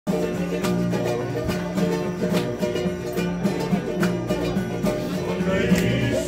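Strummed string instruments playing a steady rhythmic introduction, with group voices starting to sing near the end.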